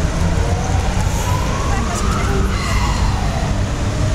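Distant emergency-vehicle siren wailing: a slow rise in pitch over about two seconds, a fall, then a rise again near the end. Underneath it runs a steady low rumble.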